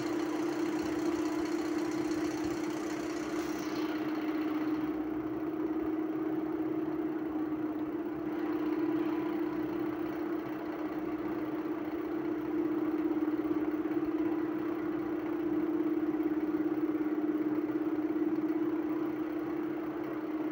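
Motorcycle engine running at a steady speed while riding, one unchanging note under road and wind noise.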